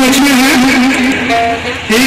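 Loud singing: a voice holds long, steady notes with small dips in pitch, easing off briefly near the end.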